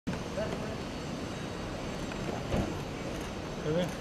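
Steady outdoor background noise with faint scattered voices and a brief knock about halfway through; a man says "okay" near the end.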